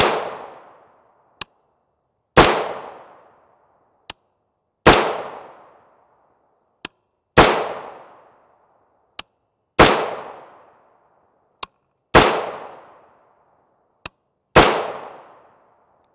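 A 20-inch-barrelled AR-15 firing seven .223 Remington 55 gr FMJ rounds, one shot about every two and a half seconds, each shot trailing off in an echo over about a second. A short, much quieter click falls between each pair of shots.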